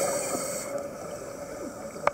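Underwater ambience: a hiss of scuba divers' exhaled regulator bubbles in the first half-second, fading into a low, steady underwater wash with a faint hum.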